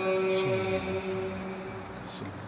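A man's voice chanting the call to prayer over the mosque loudspeakers. It holds one long, ornamented note that dips in pitch and fades out about halfway through.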